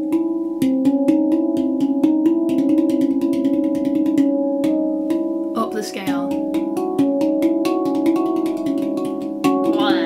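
Handpan played as a practice exercise: a fast, even stream of single-note strikes, several a second, with the steel notes ringing into one another. A brief vocal sound breaks in about halfway through and again near the end.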